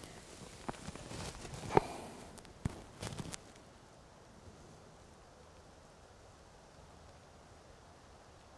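Athens Vista 33 compound bow being drawn: a few small clicks and creaks from the bow and its release in the first three seconds, then near quiet as it is held at full draw.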